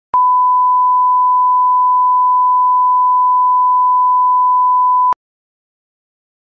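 A steady, pure line-up test tone played with colour bars. It lasts about five seconds, with a click as it starts and another as it cuts off.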